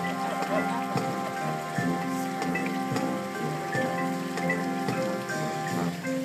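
Marching band playing: sustained brass and wind chords that change every half second or so, punctuated by drum strikes.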